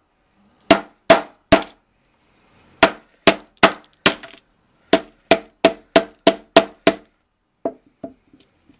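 A hammer repeatedly striking a small plastic pocket calculator, about fifteen sharp blows in bursts: three, then four, then a quicker run of seven at about three a second, and one last blow near the end. The blows break the calculator's plastic case apart.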